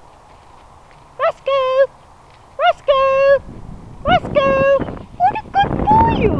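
A woman's high sing-song voice calling a dog three times, starting about a second in, each call a short rising note followed by a long held note, with more short calls near the end. Faint footsteps on the gravel path come before the first call.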